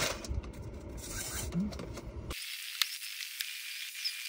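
Rustling and rubbing as a paddle overgrip and its plastic wrapper are handled. About two seconds in, the sound changes abruptly to a thin steady hiss with a couple of faint clicks.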